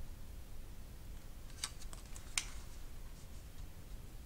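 Quiet room with a low steady hum and a few faint, sharp clicks, the clearest about one and a half and two and a half seconds in.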